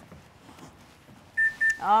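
ThermoWorks ChefAlarm probe thermometer alarm giving two short, high-pitched beeps in quick succession about a second and a half in. The alarm signals that the steak in the oven has reached its target temperature.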